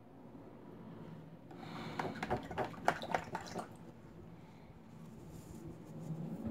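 Light clicks and rattles of painting tools and supplies being handled, a quick cluster of them about two seconds in that lasts under two seconds.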